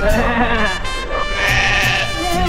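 A goat bleating: one wavering call in about the first second, over background music.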